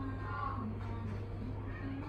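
A domestic cat meowing over soft background music.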